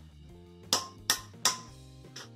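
Three sharp metallic clicks, about a third of a second apart, from a steel car bonnet hinge being swung by hand; the hinge is still stiff. Steady background guitar music runs underneath.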